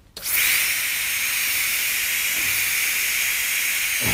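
High-speed dental drill starting abruptly and running steadily with a hissing whine.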